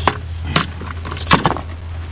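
Three sharp knocks, the first and last the loudest, over a steady low hum.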